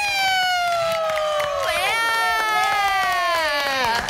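Mexican gritos: long, high, held yells that slide slowly downward in pitch. A second yell comes in about halfway, overlapping the first, and both fade down near the end.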